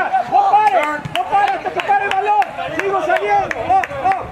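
Voices shouting and calling across a soccer field, overlapping and not clearly worded, with several short sharp knocks among them.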